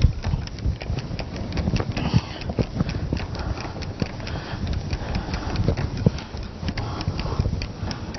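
Whiteboard eraser rubbing back and forth across a whiteboard. It makes a quick, continuous run of scrubbing strokes and small knocks.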